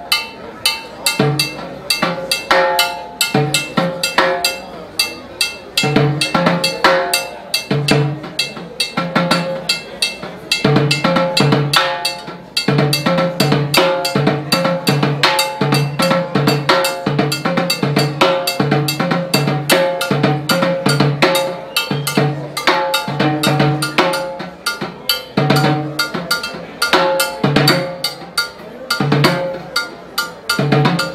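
Solo timbales played with sticks: a steady clave pattern ticked on a mounted block while the other hand improvises on the metal-shelled drums, a display of hand independence. Dense sharp strikes with ringing drum tones, and low drum hits about once a second.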